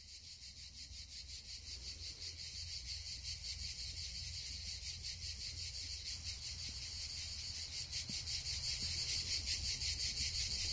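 Insects singing in a high, fast-pulsing chorus, fading in and growing louder, over a faint low rumble.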